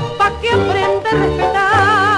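Tango played by an orquesta típica, with a steady beat in the bass and a held note with wide vibrato near the end.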